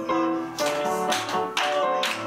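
Live music: a song's piano accompaniment with sustained notes, and two sharp percussive hits about a second apart.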